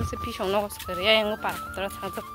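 Chickens clucking in short pitched calls, over background music that holds one long steady note.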